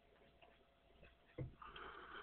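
Near silence: room tone, with one faint soft knock about a second and a half in and a faint brief rustle just after it.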